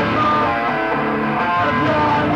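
Live rock band playing, led by electric guitar, at a steady loud level.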